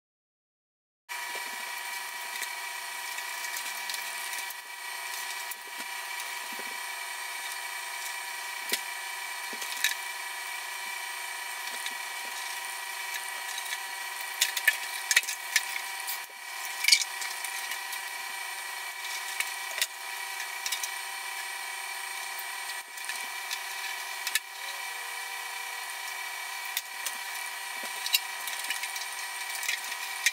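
Steady hiss with a fixed hum and faint high whine, under scattered light clicks, taps and rustles of a covered balsa model airplane tail surface and a tape roll being handled on a towel-covered table, busiest about halfway through and again near the end.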